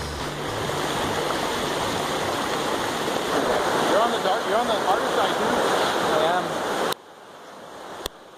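Fast floodwater rushing down a concrete ditch channel, a steady loud rush of turbulent water that cuts off suddenly about seven seconds in.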